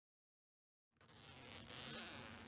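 After about a second of silence, a jacket's zipper is pulled up, its teeth buzzing as the sound grows louder toward the end.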